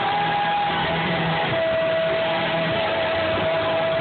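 Music with guitar, played in a large room, with long held notes through the middle.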